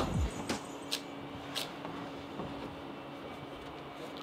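A few short, sharp knocks and scuffs of a climber's hands and rubber climbing shoes on plastic holds, about three over the first second and a half, over a steady low hum.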